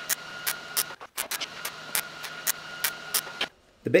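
MIG welding arc laying tack welds on a steel frame: a steady frying hiss with irregular crackles. It breaks off briefly about a second in, then runs again until shortly before the end.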